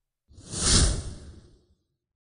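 A whoosh sound effect marking an edited transition to a title card: a single swell of noise that comes in about a third of a second in, peaks quickly and fades away over about a second.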